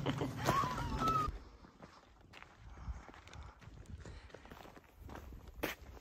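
Footsteps of people walking on a gravel trail: scattered, irregular steps, with a sharper louder one near the end.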